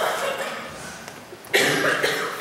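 A young woman coughing close into a handheld microphone: a cough fading in the first half second, then a sharper, louder one about one and a half seconds in.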